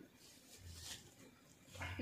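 Near silence: quiet room tone with a faint steady low hum, and a voice starting up right at the end.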